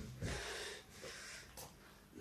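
A boy breathing hard from the exertion of push-ups: a long, heavy, noisy breath and then a short one.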